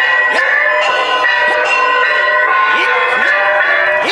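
Temple festival band music: struck gongs whose pitch drops after each hit, about two strokes a second, with cymbal crashes over long held shrill wind notes, typical of a suona-led procession band. Voices mix in underneath.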